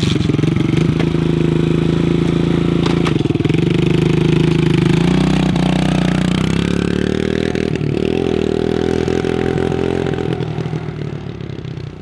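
Small dirt bike's single-cylinder engine running loudly right after starting, its note changing about halfway through as it pulls away. The sound fades near the end as the bike rides off.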